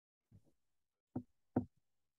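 Three short, dull knocks: a faint one near the start, then two louder ones about half a second apart in the second half.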